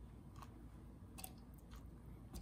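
Faint, soft sounds of a peeled banana being broken into pieces by hand and dropped into a plastic blender cup, with a few light clicks.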